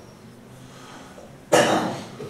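A single loud cough about a second and a half in.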